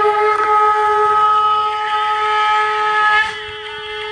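Conch shells (shankha) blown in long, steady held notes, more than one at once. The higher notes break off about three seconds in and come back shortly after.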